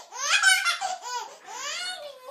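A baby laughing hard in a few high-pitched bursts, the loudest in the first second and another rising one near the end.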